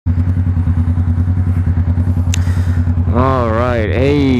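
Kawasaki Vulcan S 650 parallel-twin motorcycle engine running steadily at low revs, with an even, rapid pulse. A man's voice comes in over it in the last second.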